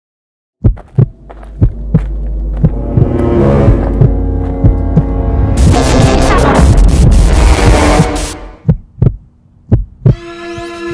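Dramatic intro sound design: paired thumps like a heartbeat over a low drone that swells. About halfway through it builds to a loud noisy surge that cuts off suddenly, leaving a few last thumps near the end.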